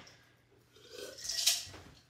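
A baby wipe rubbing antique wax onto a small painted wooden piece, heard as one soft swish that swells about a second in and fades; the first second is nearly quiet.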